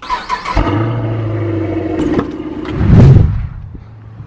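Car engine starting, running steadily, then revved once about three seconds in before settling back down.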